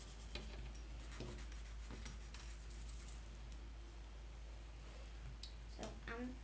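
Faint scratching of coloured pens on card as the cards are coloured in, with a few light ticks.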